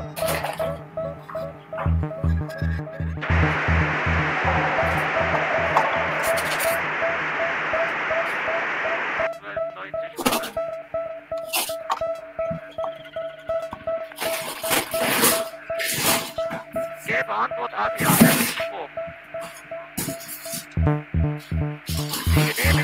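Improvised electronic music from synthesizers and electric guitar. A low pulse, about three beats a second, gives way a few seconds in to a loud hiss of noise that cuts off suddenly. After that a single held tone runs under scattered crackles and clicks, and the low pulse comes back near the end.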